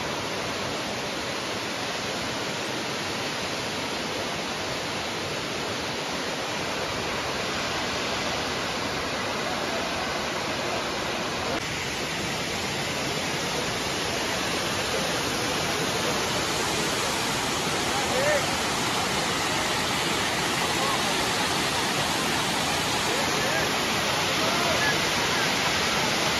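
Waterfall cascading down a tall, tiered rock face: a steady, even rush of falling water that grows slightly louder toward the end.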